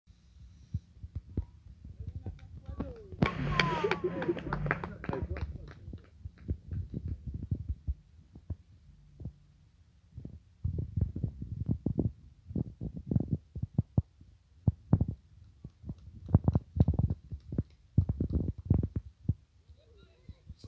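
Irregular low thumps and rumble on the microphone, with a short burst of distant voices about three to five seconds in.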